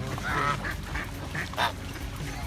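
Domestic geese and ducks calling, a few short honks and quacks as they crowd in to be fed, the loudest about one and a half seconds in.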